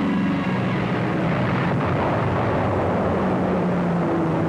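Steady roar of propeller aircraft engines on an old film soundtrack, with a few held low tones under the noise and a swell about halfway through.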